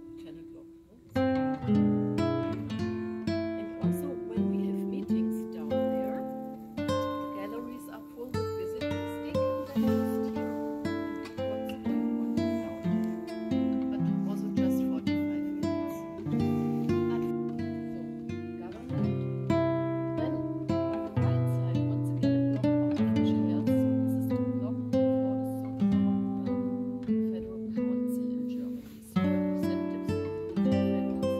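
Background music: an acoustic guitar picking a melody, each plucked note ringing and fading, with a short break about a second in and another near the end.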